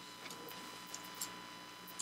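Quiet room tone: a steady faint electrical hum with a few soft, irregularly spaced clicks.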